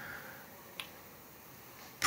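Faint room tone with a single short, sharp click a little under a second in.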